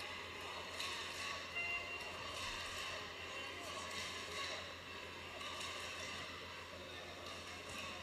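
Arena hall ambience: a low murmur of scattered voices over a steady hum, echoing in a hall with few spectators.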